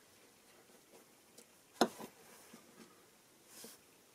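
Hands handling small metal parts on a wooden workbench: faint ticks and touches, with one sharp click a little under two seconds in, a softer one just after, and a brief soft rustle near the end.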